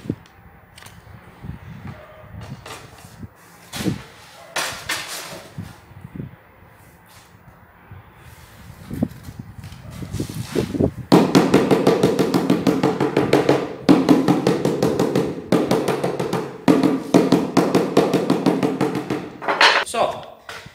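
Scattered scrapes and knocks of a large porcelain floor tile being handled and set onto a bed of mortar, then, from about halfway, loud music with a steady beat.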